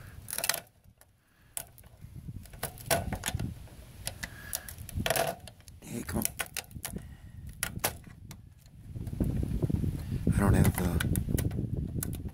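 Screwdriver working a screw on a circuit board in a sheet-metal chassis, with a string of sharp metallic clicks, taps and clinks against the board and chassis.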